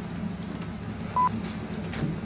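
French speaking-clock time signal: a single short, high beep about a second in, over a steady low hum.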